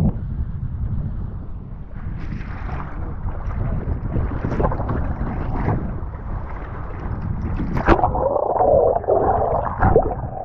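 Wind buffeting a GoPro microphone while a kiteboard skims and slaps over choppy sea, with scattered splashes. From about eight seconds in, louder rushing and gurgling water as the camera goes under the surface.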